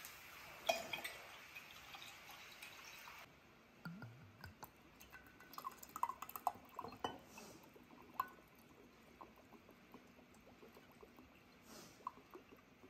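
Liquid poured in a thin stream from a glass bottle into a glass jar of apple juice, with faint glugs and scattered drips. A light glass clink comes near the start.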